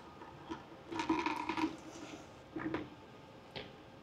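CFM56-5B N1 speed sensor probe being slid out of its housing by hand: faint handling sounds, with a brief scrape about a second in and a few light metallic clicks.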